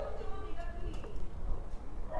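Faint voices in the background, too low to make out as words, over a low steady rumble.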